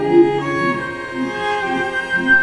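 Music: bowed strings, violins and cello, holding long notes that change pitch a few times.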